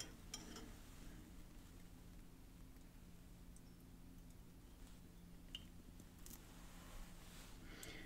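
Near silence: room tone with a faint steady hum and a few small, faint clicks.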